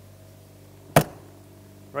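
A single sharp slam about a second in: a motorhome's underbelly storage compartment door being pushed shut and latching.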